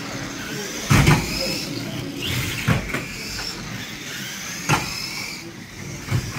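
Radio-controlled 1300 stock cars racing on an indoor carpet track, their electric motors whining up and down in pitch over tyre noise. Sharp knocks from car contact sound four times, the loudest about a second in.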